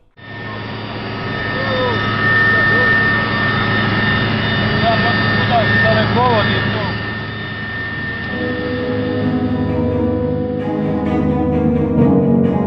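Steady helicopter cabin noise in flight, a constant engine whine and drone heard from inside the cabin. Low bowed-string music comes in about eight seconds in.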